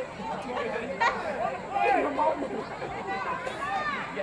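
Several voices chattering and calling out across a football field, higher-pitched and more distant than a close narrator.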